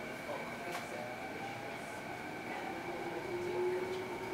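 Canada Line SkyTrain car running along the elevated guideway, heard from inside the car: a steady rolling rumble with two high whining tones and a fainter lower motor tone that slowly shifts in pitch.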